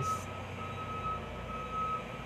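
Electronic beeper sounding a steady high tone in short beeps about once a second, over a low hum.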